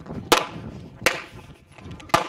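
Two gunshots about three-quarters of a second apart, each followed by a short echo, from athletes firing at a shooting stage.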